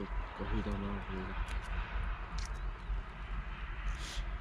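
Steady low wind rumble on the microphone with a faint hiss, a man briefly talking about half a second in, and a few faint clicks.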